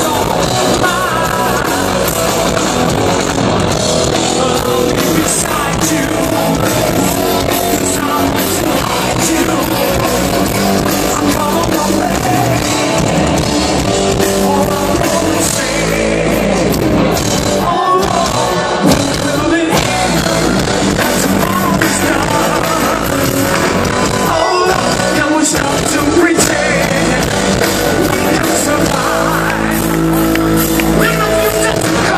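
Live hard rock band playing loud: distorted electric guitars, bass and drums with a singing voice, heard from within the crowd over the concert PA.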